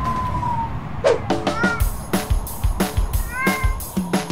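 A kitten meowing twice over background music; the music's held high tone ends about a second in, after which a steady beat runs under the meows.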